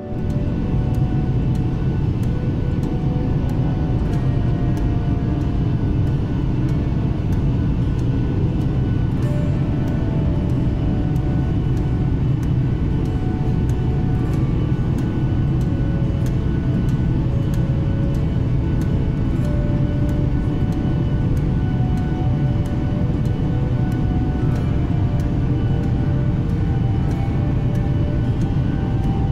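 Steady roar of a jet airliner cabin in flight, overlaid with background music that has held melody notes and a light, even beat.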